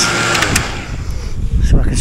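Milwaukee cordless jobsite fan running, a steady rush of blown air close to the microphone. A couple of sharp clicks come about half a second in, and speech resumes near the end.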